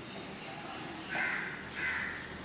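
Two harsh caws from a crow in the second half, about half a second apart, over a steady low room background.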